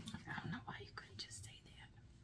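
A woman whispering under her breath, quiet and broken, fading out in the second half.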